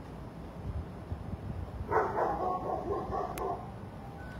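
Dogs barking, a run of repeated barks starting about halfway through, over a low steady rumble, with one sharp click near the end.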